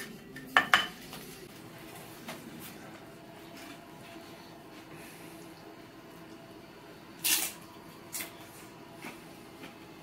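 Metal tongs clicking against a ceramic plate and slow-cooker crock as dip is served, sharpest a little under a second in. About seven seconds in comes a short loud crunch, a tortilla chip being bitten, with a smaller crunch about a second later.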